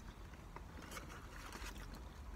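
Faint chewing of a burger with small scattered mouth clicks, over a steady low rumble.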